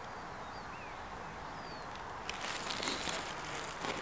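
Small birds chirping in the background with short gliding calls. About two seconds in, a stretch of rustling with a few light knocks begins and is the loudest sound.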